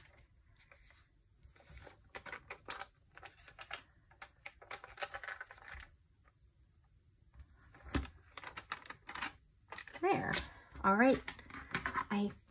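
Soft rustles and small clicks of hands handling stickers and paper on a planner page, with one sharper tap about eight seconds in. A voice murmurs without clear words near the end.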